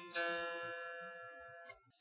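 An electric guitar string picked once, its note ringing and fading away over about a second and a half. This is the string played after a big bend: on these guitars, without a locking nut, it might sound flat on return.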